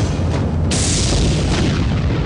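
Dramatic background score with booming drum hits and a sudden loud crash about two-thirds of a second in: a suspense sting under a reaction shot.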